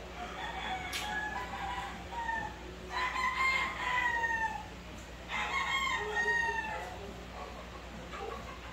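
Roosters crowing off-camera: a few short calls, then two long crows of about a second and a half each, the pitch dropping at the end of each.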